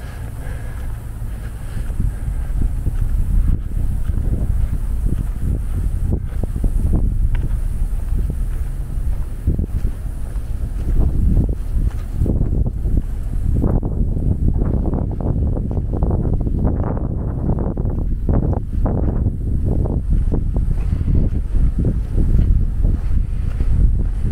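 Wind buffeting the camera microphone, a continuous low rumble that turns gustier and more uneven in the second half.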